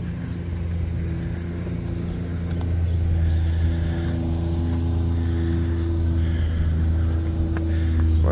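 An engine running steadily, a low hum with a few steady tones, getting a little louder a few seconds in.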